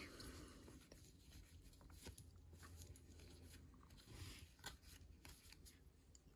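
Very faint handling of a stack of baseball trading cards: soft clicks and rustles as the cards are flipped through by hand. There is a slightly louder rustle about four seconds in and one sharper click just before five seconds.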